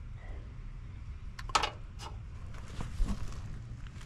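A few short knocks and clicks, two close together about one and a half seconds in and one at two seconds, from hands and the camera handling gear at the unit, over a steady low hum.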